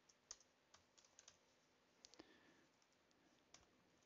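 Faint keystrokes on a computer keyboard: a scattered handful of short, light taps at an uneven pace while a web address is typed.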